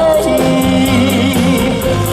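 Live band playing a non-stop cha-cha medley of Mandarin pop songs, with a steady dance beat and bass under a male singer's voice.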